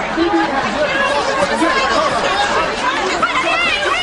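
Several people shouting over one another in a snowball fight, with high shrieks near the end as someone cries 'Stop! Stop!'.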